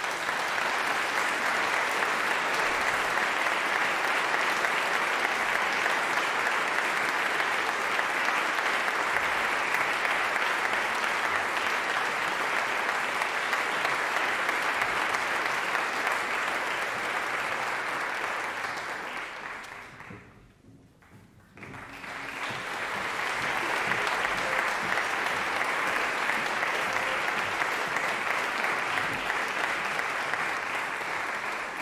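Concert audience applauding. The clapping dies away about twenty seconds in, stops briefly, then starts up again just as strongly.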